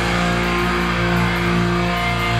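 Distorted electric guitars and bass from a hardcore band, holding one loud sustained chord with no drums playing.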